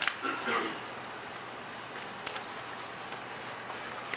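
Quiet room tone in a meeting room with a few sharp, faint clicks, one near the start and one a little past two seconds in, and a brief murmur of a voice just after the start.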